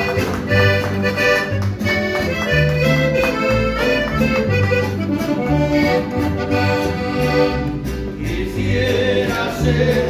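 Accordion-led Latin American folk music with a bass line that steps along in a steady rhythm.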